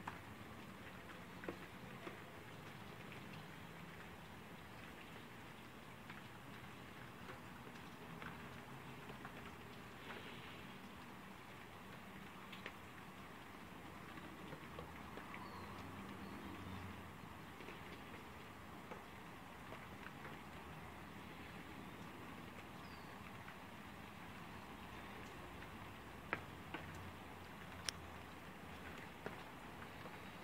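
Light rain falling: a faint, steady patter with scattered drips ticking, and a few sharper drip taps near the end.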